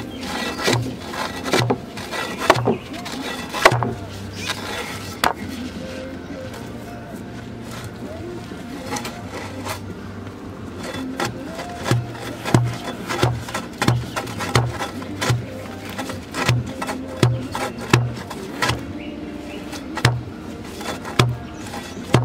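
A heavy steel-pipe tamper repeatedly striking wet sand packed around a wooden fence post, giving short thuds at irregular intervals. Background music with a steady beat plays underneath.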